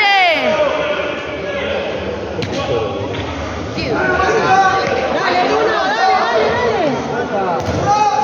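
Voices shouting and calling across an indoor futsal court, echoing in the hall, with two sharp thuds of the ball about two and a half and three seconds in.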